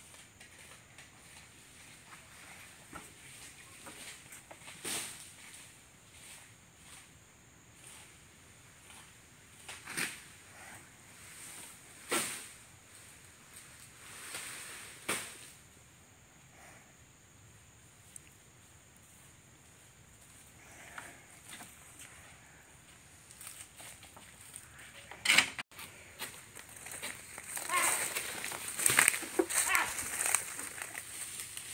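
Quiet outdoor background broken by a few scattered knocks and clicks around a harnessed water buffalo and its wooden cart. A sharp knock comes about 25 seconds in, then a run of crackling rustles near the end, as of footsteps through dry palm fronds and grass.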